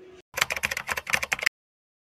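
A rapid run of light clicks and rattles from books being shifted and handled on a wooden bookshelf, lasting about a second and cutting off abruptly.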